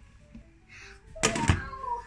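Glass lid set down onto a stainless steel cooking pot: a sudden clattering knock about a second and a half in, followed by a short metallic ring.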